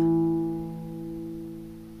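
Classical acoustic guitar played fingerstyle: a note plucked at the start rings together with held bass notes and fades away slowly, as in a slow, note-by-note practice tempo.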